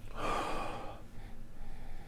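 One long sniff through the nose, about a second, taken with the nose inside a beer glass to draw in the aroma of a hazy IPA.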